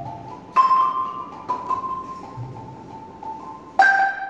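Balafon struck with mallets in a slow, sparse phrase: three pitched notes, about half a second in, at a second and a half, and near the end, each ringing out and fading.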